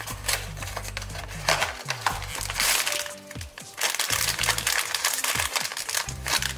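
A foil blind-box bag and its cardboard box being handled and crinkled by hands, in a series of short rustles with a longer crinkle in the middle, over background music.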